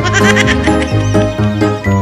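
Background music with a steady bass line and wavering high notes.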